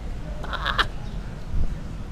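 Low rumble on the microphone outdoors, with one short, harsh, caw-like call about half a second in.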